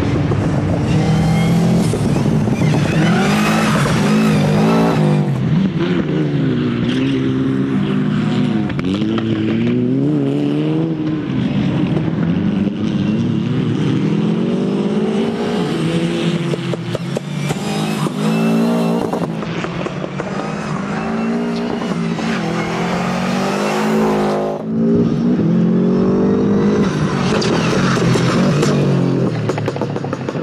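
Subaru Impreza rally car's flat-four engine revving hard as it is driven through a tight circuit, its pitch climbing and falling repeatedly with gear changes and corners, with a brief lift off the throttle about three-quarters of the way through.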